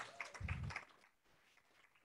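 Faint, scattered audience applause that dies away within the first second, with a dull low thump about half a second in, then near silence.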